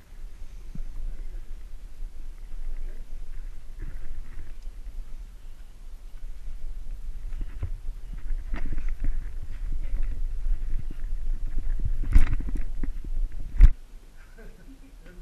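Handling noise from a body-worn camera as its wearer moves and clambers: a steady low rumble of the camera jostling and rubbing, with scattered scrapes and knocks that grow busier, and two sharp knocks near the end.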